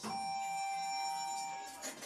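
OTIS elevator car's electronic chime: one steady tone of several pitches at once, held for nearly two seconds and then cut off, with a light click near the end.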